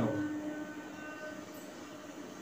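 Marker writing on a whiteboard, with a few faint squeaks in the first second or so, over a steady low electrical hum.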